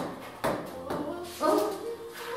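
Giant wooden Jenga blocks knocking as a block near the bottom of the tower is tapped and pushed: three sharp wooden knocks about half a second apart, followed by a short voice-like sound near the end.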